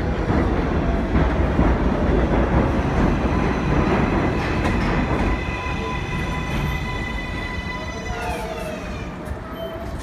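R62A subway train pulling into an elevated station: a loud rumble of wheels on the rails, then a set of steady high whines that slide down in pitch near the end as the train brakes and slows almost to a stop.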